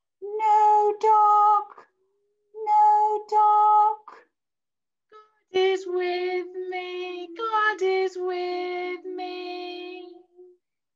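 A woman and a young child singing a simple call-and-response song unaccompanied: two short phrases of two held notes each, then a longer phrase of several held notes.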